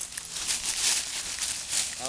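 Dry fallen leaves rustling and crunching underfoot in an irregular crackle as feet move through them.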